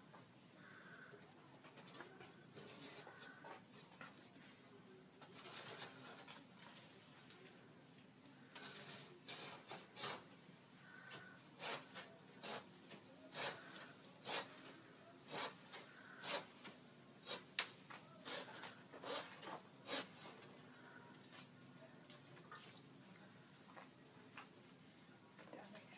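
Hand saw cutting into a small tree trunk: a run of sharp rasping strokes, a little under one a second, through the middle of the stretch.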